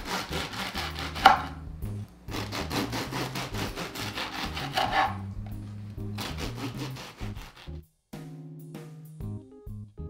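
Serrated bread knife sawing through the crisp crust of a sourdough baguette on a wooden board: two runs of quick rasping strokes, one per slice, the second ending about five seconds in. Light background music continues after the cutting stops.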